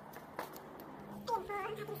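A light click about half a second in, then a woman's high-pitched, drawn-out voice in the second half.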